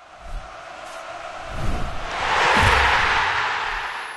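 Outro sound effect under the end card: a rising roar of noise, with a few low thuds, that peaks about two and a half seconds in and then starts to fade.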